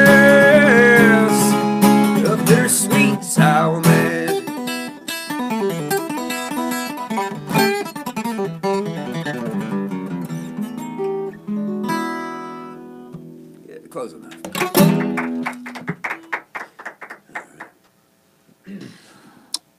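Bourgeois acoustic guitar playing a song's outro. A held sung note ends about a second in, then picked and strummed notes thin out, and a last strum near the end rings and fades, followed by a few soft taps.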